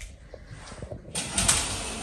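Hotel-room curtains being pulled open along their rail, a sliding swish of fabric and runners that starts about a second in and is loudest just after.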